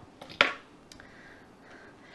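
A single sharp click about half a second in, then a fainter tick, over quiet room tone.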